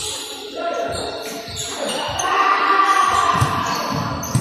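A basketball bouncing on a hardwood gym floor during a game, the thumps echoing in a large hall. Players' voices call out, loudest in a drawn-out call during the second half.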